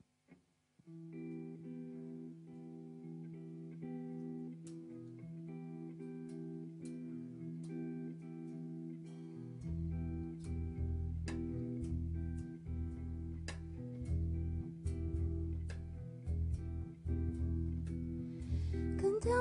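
Plucked guitar playing an instrumental intro of sustained, ringing notes. About halfway through, a deep double bass line joins underneath and the music grows louder.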